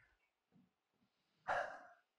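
Near silence, then about one and a half seconds in a man breathes out audibly into his microphone, a short sigh that fades quickly.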